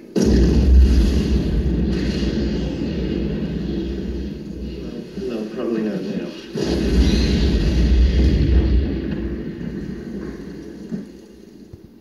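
Two heavy explosion booms from a film soundtrack, heard through a TV's speakers: one bursts in right at the start and rumbles for about three seconds, a second hits about six and a half seconds in and rumbles on for a couple of seconds, as a vehicle crashes and burns.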